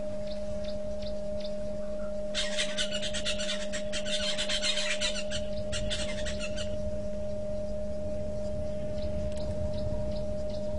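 Outdoor waterhole ambience over a steady electrical hum in the live-camera audio. From about two and a half seconds in, a rapid high rattling lasts about four seconds, an animal call whose maker is not seen.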